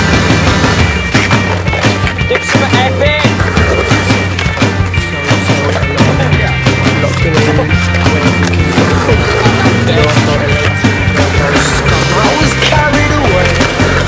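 A skateboard rolling on concrete, with sharp clacks of the board hitting the ground during flip tricks, over a music track with a steady bass line.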